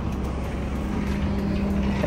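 Pickup truck's engine idling steadily at the trailer hitch, a low even hum.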